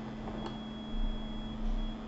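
Steady electrical hum with a thin high whine under it, one faint click about half a second in and two soft low thumps later on.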